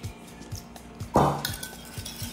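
Metal spoon clinking against a small ceramic ramekin while ketchup is added to a butter sauce, with one louder clatter a little over a second in, over background music with a steady beat.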